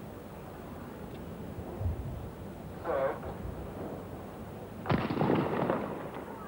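Starter's pistol firing a single sharp shot about five seconds in to start a 200 metres sprint, followed by about a second of noise from the stadium. Before it, low stadium murmur and a short call about three seconds in.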